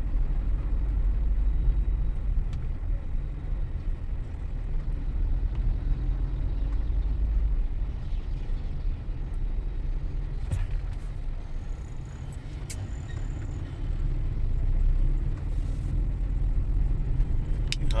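Car cabin noise while driving: a steady low rumble of engine and tyres, heard from inside the car, with a few faint clicks about ten seconds in.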